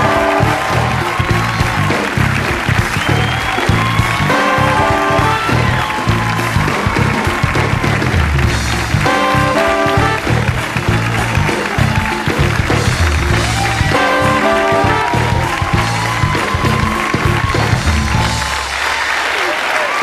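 Talk-show house band playing an upbeat walk-on tune with brass, over steady audience applause; the music stops about a second before the end.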